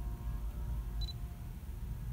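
Steady low rumble inside a car cabin, with one short high beep about halfway through.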